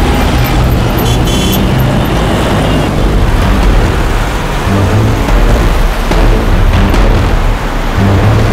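Loud dramatic background score with a heavy, pulsing bass, with road traffic and a car engine mixed in beneath it.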